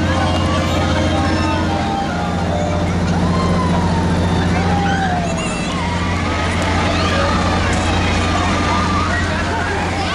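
Carnival midway sound: a steady low machine hum from the running rides, with crowd voices and shouts over it.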